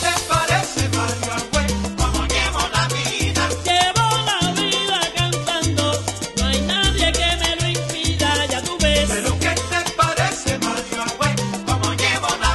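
Salsa music: a stepping bass line under dense, rhythmic percussion.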